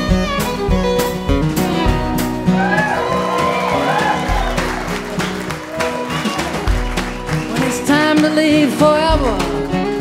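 Live acoustic country band playing an instrumental break: a fiddle leads with sliding, wavering notes over strummed acoustic guitar and a steady drum beat.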